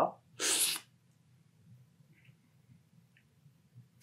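One short, hissing slurp of brewed coffee sucked in with air from a cupping spoon, about half a second long, a little way in; after it only a few faint small sounds.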